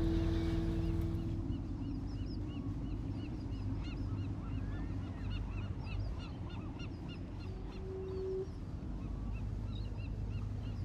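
A flock of birds calling, many short, high calls overlapping, over a low steady rumble. Held music tones fade out in the first second or so.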